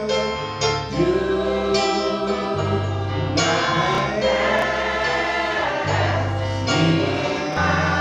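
Live gospel praise singing: a man sings lead into a microphone while the congregation sings along, over instrumental backing with sustained bass notes.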